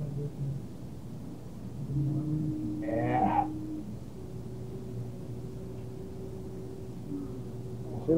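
Handheld sonic vibration massage unit humming with a single steady tone over a low hum. The tone starts about two seconds in, breaks off briefly near the middle and comes back slightly higher. A short vocal sound comes about three seconds in.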